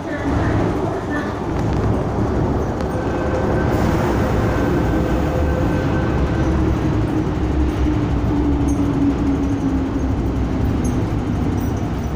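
MTR M-Train electric multiple unit running into the platform and braking to a stop: a steady rumble of wheels on track, with a whine that falls slowly in pitch as the train slows.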